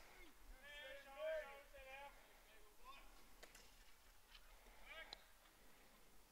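Near silence with faint, distant voices calling out, about a second in and again around five seconds.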